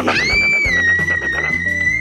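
A young boy's single long, high-pitched playful scream, gliding up at the start and then held steady, over background music.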